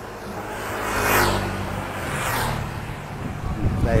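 A motorbike riding past close by, its engine growing louder to a peak about a second in and then fading away.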